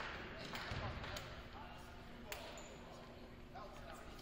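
Faint, echoing gymnasium ambience of indistinct voices, with a few sharp knocks of a basketball bouncing on the hardwood court; the clearest knock comes a little past two seconds in.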